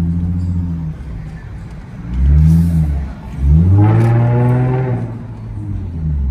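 Car engine heard from inside the cabin as the car pulls away, revving up twice: a short rise in pitch about two seconds in, then a longer, higher one from about three and a half seconds that drops back near the end.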